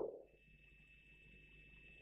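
Near silence: room tone with a faint steady high tone, after a man's voice fades out at the very start.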